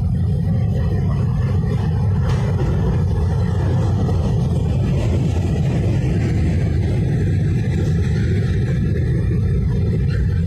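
Norfolk Southern freight cars (boxcars and covered hoppers) rolling steadily across a steel girder bridge, a continuous low rumble of wheels on rail.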